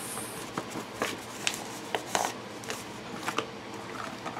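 A paper card being opened and handled: light rustling with a scatter of soft clicks and taps at irregular intervals.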